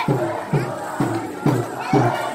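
Mourners doing matam, beating their chests in unison in a steady rhythm of about two dull thumps a second, over the voices of a crowd.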